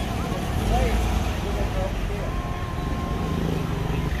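Busy street ambience: car traffic with a constant low rumble and the scattered voices of people nearby. A thin, steady tone is held for about a second and a half in the second half.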